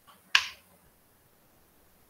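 A single sharp click about a third of a second in, just after a fainter soft tick, dying away quickly; otherwise faint background hiss.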